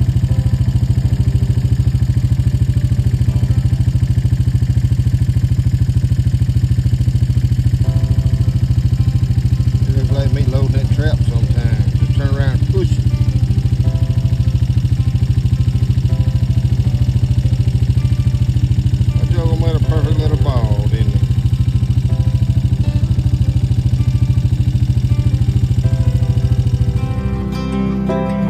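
Motor vehicle engine idling, a steady low drone that holds one pitch throughout. A voice cuts in briefly twice, about ten and twenty seconds in. Near the end the drone gives way to guitar music.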